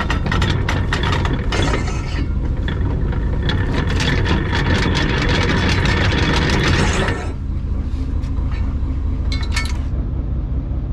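A Dutch barge's engine running steadily, with a dense, rapid metallic clatter of ticks and rattles on top that stops suddenly about seven seconds in; a few more clicks come near the end.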